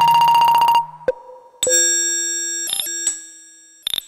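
STS Serge modular synthesizer playing an improvised patch: a rapidly pulsing, buzzing tone cuts off just under a second in, followed by a short ping and then a bright, metallic, bell-like tone that fades away over about a second and a half. Another short burst comes in near the end.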